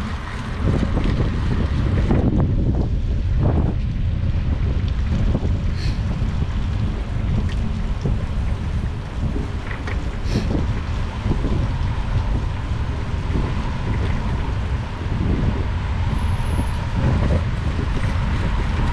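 Wind buffeting the microphone of a handlebar-mounted camera while cycling: a heavy, gusting low rumble over a steady hiss of traffic on wet roads.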